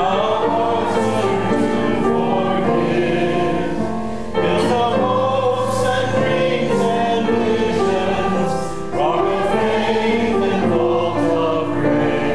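A congregation singing a hymn together in sustained held notes, with short breaks between phrases about four and nine seconds in.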